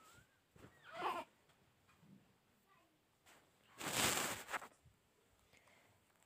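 Hands handling flatbread and dishes on a metal tray: a brief rustling scrape about four seconds in. About a second in there is a short, faint wavering call.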